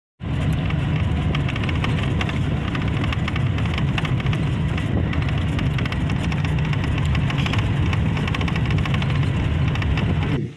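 Steady engine and road rumble of a moving vehicle, heard from inside its cabin, with a rapid crackle or rattle over it.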